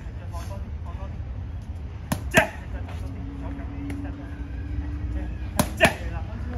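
Boxing gloves striking red focus mitts in quick one-two combinations: two sharp slaps about a quarter second apart, about two seconds in, and another pair near the end.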